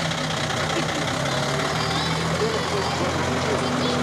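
Box truck's engine running steadily at low speed, a low even hum, as the truck moves off. Faint voices in the background.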